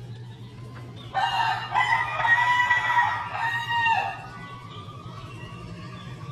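A rooster crowing once: a single loud call of about three seconds, starting about a second in.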